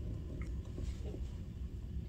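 Quiet room hum with a faint click or two as a finger presses the rubber keypad of a Brady M610 handheld label printer.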